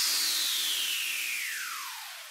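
A falling noise sweep, the whoosh that closes an electronic dance track: a hissing wash with a tone gliding steadily down in pitch, fading out as it goes.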